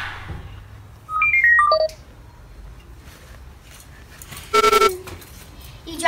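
A quick run of electronic beeps at stepping pitches, like a ringtone or game sound effect, about a second in. It is followed, a few seconds later, by a short buzzy electronic tone.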